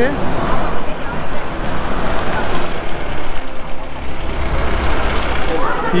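Road traffic close by: a steady rush of heavy-vehicle noise, such as a bus or truck running past, with a deeper engine rumble building about two thirds of the way in.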